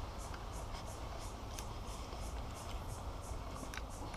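Faint scratchy handling of a spinning rod and reel during a lure retrieve, with a short high-pitched chirp repeating about four to five times a second in the background.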